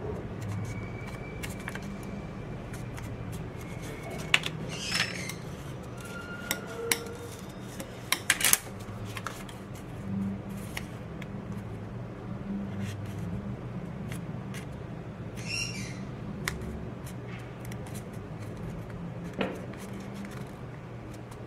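Heavier-weight paper being folded and creased by hand: scattered sharp clicks and short crinkles as the folds are pressed, busiest about a third of the way in, over a steady low hum.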